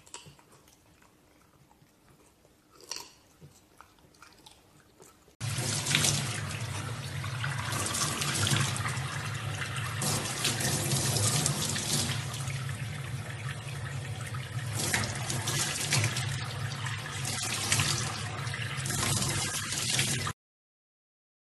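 Faint crunching of a French bulldog chewing a raw carrot. About five seconds in it gives way suddenly to loud, steady water from a tap pouring into a stainless steel sink, splashing over a baby chimpanzee's hands.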